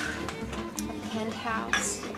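A swing violin tune plays under the clink of dishes and cutlery, with a voice heard briefly.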